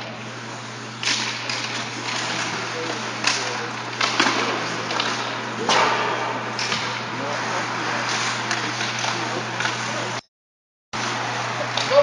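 Ice hockey play on an indoor rink: skates scraping and a sharp clack of stick on puck or boards every second or two, with indistinct player shouts over a steady low hum. The audio cuts out completely for under a second near the end.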